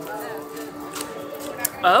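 Background voices over steady background music, with a few faint clicks; near the end a loud spoken 'oh'.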